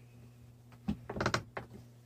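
Quick-Grip bar clamp being tightened: a click about a second in, then a quick run of ratchet clicks and one more click shortly after.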